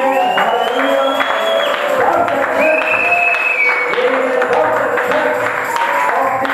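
A congregation singing a worship song together in held notes, accompanied by hand clapping.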